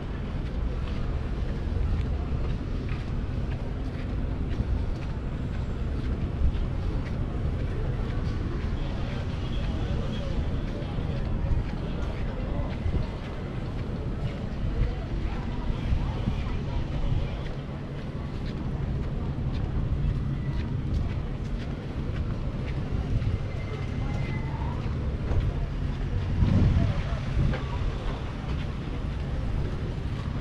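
Outdoor promenade ambience: a steady low rumble of wind on the microphone and road traffic, with voices of people nearby, and a louder swell with a rising tone near the end.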